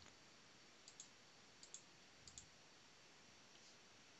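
Near silence with three faint computer mouse clicks, each a quick double tick, about two-thirds of a second apart.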